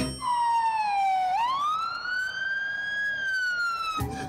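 Ambulance siren wailing: one tone that slides down for about a second, then rises and slowly falls again.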